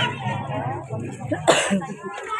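Children's voices chattering as a group walks along, with one short cough about one and a half seconds in.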